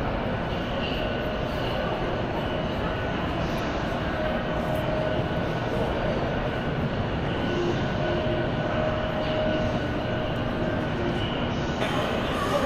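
Steady ambience of a large metro station concourse: an even low rumble with faint distant voices.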